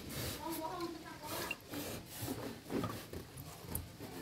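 Splashing and rustling as hands rummage through shallow water and soaked leaves in a tub to catch small fish, in short irregular scratchy strokes, with a faint voice in the background.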